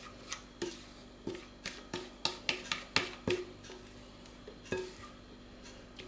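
A spatula tapping and scraping against a glass mixing bowl as batter is scraped out into a metal baking tin: about a dozen light clicks with a short ring, close together for the first three seconds, then only a couple more.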